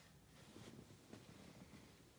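Near silence: quiet room tone with faint soft rustling.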